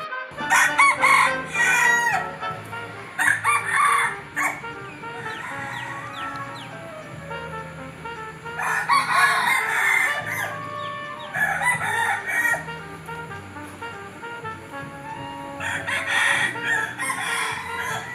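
A rooster crowing several times, each crow a loud call with pauses of a few seconds between, over faint background music.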